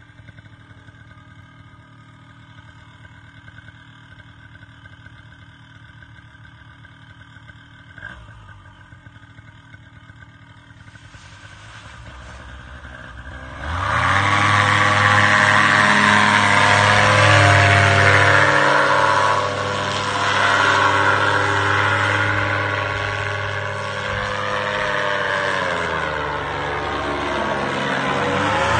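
Paramotor engine and propeller idling steadily, then opened up to full throttle about 14 seconds in for the take-off run and climb. It stays loud from there, with a couple of brief dips in power.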